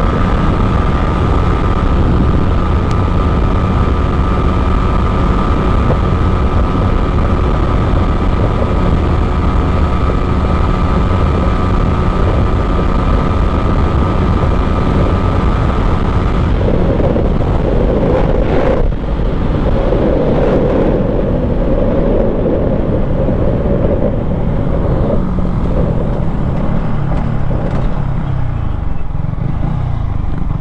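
Yamaha MT15's single-cylinder engine running at high, steady revs at speed, with heavy wind noise on the microphone. About halfway the high engine note stops and the engine winds down, its pitch falling toward the end as the bike slows.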